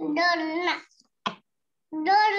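A child's voice in a drawn-out, sing-song call lasting just under a second, followed by a single short click.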